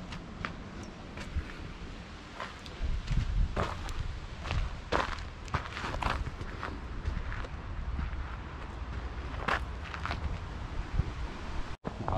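Footsteps on dirt ground and the rustle of a handheld camera being carried, with a low rumble from about three seconds in. The sound cuts out briefly just before the end.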